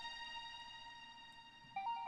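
Synth1 virtual-analog software synthesizer sounding a bright, held note that slowly fades away, then a few short notes stepping in pitch start near the end.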